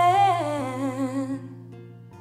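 Female voice holds a sung note with vibrato that slides down in pitch and fades out about one and a half seconds in, over acoustic guitar accompaniment that rings on softly afterward.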